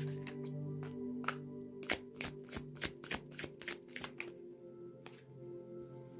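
A tarot deck being shuffled by hand: scattered card snaps, then a quick run of about ten crisp snaps in the middle. Soft background music with steady held tones plays underneath.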